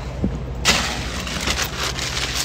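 Steady low rumble of a car interior, with a sudden burst of rustling and crackling noise a little under a second in, as a phone is handled and rubbed against clothing near the microphone.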